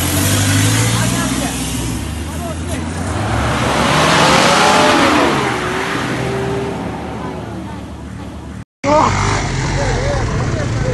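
Rally off-road 4x4s driving slowly past on a dirt road with their engines running, one passing close and swelling loudest about four to five seconds in, while people talk over it. The sound drops out for a moment near the end.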